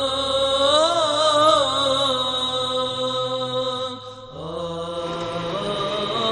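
Intro music of a sung chant: long, held notes that bend and waver in pitch, with a short break about four seconds in.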